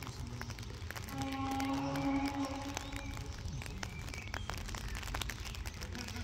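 A distant train horn sounds one steady note for about two seconds, about a second in, from the special train pulling away down the line. Scattered sharp ticks and a low rumble run under it.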